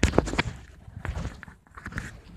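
A few sharp knocks in the first half-second, then softer clicks and rustling: handling noise close to the microphone as a dust mask is put on.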